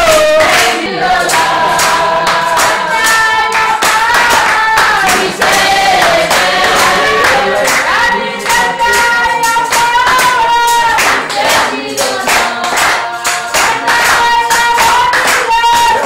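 A church congregation singing a hymn together, with hand clapping keeping time.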